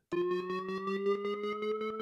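Electronic transition loop triggered on a Roland SPD-SX Pro sampling pad: a synth sound with a steady low note under a note that slowly rises in pitch, chopped into a fast, even pulse.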